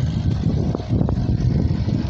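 Wind buffeting a handheld phone's microphone: a low, uneven rumble, with no speech.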